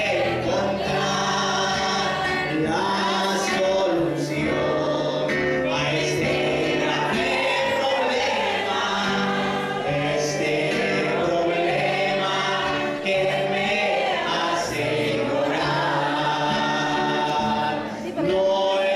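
A congregation singing a hymn together, many voices in unison.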